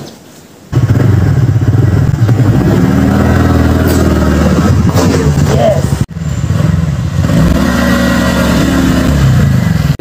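Motor scooter engine starting up about a second in and pulling away, running under throttle with its pitch rising and falling as it speeds up and eases off; a short break a little after halfway.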